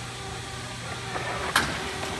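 Packaging machinery forming kraft-paper trim boards, running with a steady hum, with a single sharp knock about one and a half seconds in.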